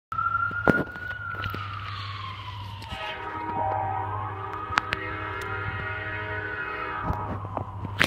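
A siren wailing, its pitch sliding slowly down and then back up and down. About three seconds in, an approaching diesel locomotive's air horn sounds one long steady multi-note chord for about four seconds over it.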